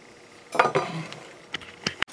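Hand tools and a small metal stove being handled on a workbench: a faint rustle, then a few light metal clicks, ending with two sharp knocks as a hand file is laid down on the wooden bench.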